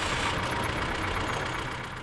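Motor vehicle engine idling with a steady low rumble, heard from inside the cab and fading slowly.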